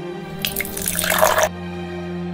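Milk pouring from a plastic jug into a glass of ice cubes, a splashing pour of about a second, over steady background music.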